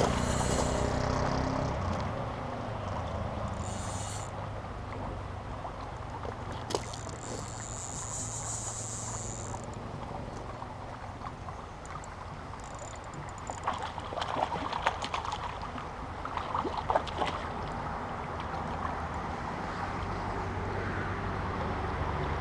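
Steady low rumble of wind on the microphone by the water, with a cluster of small splashes and clicks about two-thirds of the way through as a hooked fish is played to a landing net.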